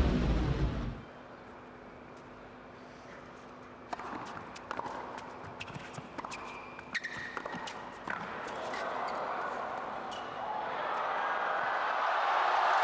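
A brief whooshing music sting that cuts off about a second in. Then a tennis rally: sharp racket-on-ball hits from about four to eight seconds in, followed by rising crowd noise and applause as the point ends.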